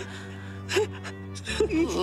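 Tearful gasping and a wavering, sobbing voice over a sustained, slow music score whose chord shifts about one and a half seconds in.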